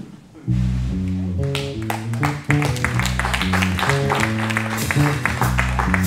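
Live jazz fusion band starts a tune about half a second in: an electric bass line of low stepping notes, with drums, percussion and guitar filling in over the next second or so. The full band then plays on at full volume.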